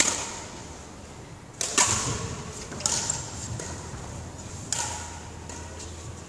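Badminton racket strings striking a shuttlecock four times in a rally, sharp hits about one and a half to two seconds apart, each ringing briefly in a large hall.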